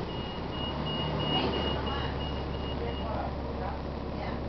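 Bus warning beeper sounding a rapid row of short, high-pitched electronic beeps, about four a second for roughly three seconds, then stopping. Under it the 2007 Gillig Advantage's Cummins ISM diesel engine runs with a steady low rumble.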